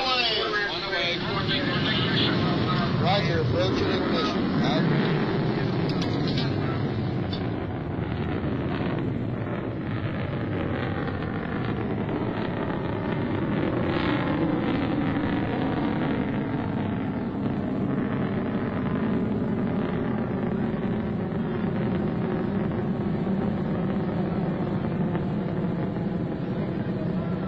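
Poseidon ballistic missile's solid-fuel rocket motor roaring in flight after launch. It is a steady rushing roar that sets in about a second in and holds an even level.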